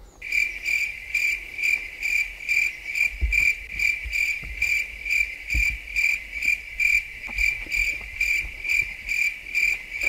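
Cricket chirping, a high chirp repeating evenly about two and a half times a second: the stock 'crickets' sound effect for an awkward silence.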